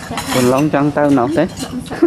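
Spoons clinking against china bowls and plates while people eat a meal, under loud talking.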